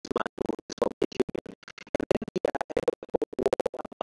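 Garbled, stuttering audio: a voice recording chopped into rapid fragments several times a second, with dead-silent dropouts between them, so that no words come through.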